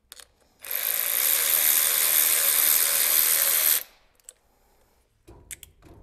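Cordless electric ratchet running for about three seconds, spinning out the bolt of a T-bolt hose clamp to open the clamp wider. A few light metal clinks near the end as the clamp is handled.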